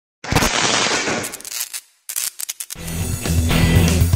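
Intro title sound design: a noisy whoosh swells up about a quarter second in and fades near two seconds. A few sharp hits follow, then music with a deep bass line starts.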